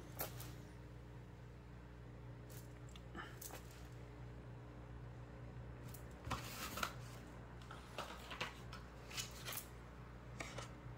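Hands handling a carded die-cast toy car in its plastic blister pack: scattered light clicks and crinkles, the clearest about six to seven seconds in and again near the end, over a faint steady hum.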